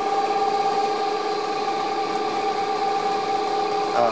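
Homemade motor-generator rig, an electric motor driving a 0.75 kW water-pump motor converted into a generator with a 9 kg flywheel, running at steady speed with an even, unchanging whine of several tones. It is running under load, powering two banks of light bulbs at about 300 W.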